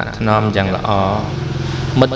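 A man narrating in Khmer, drawing out one long syllable in the second half.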